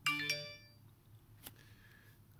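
iPhone notification chime: a bright cluster of tones struck once, dying away within about half a second, as the Apple ID password-reset notification arrives on the phone. A faint click follows about a second and a half in.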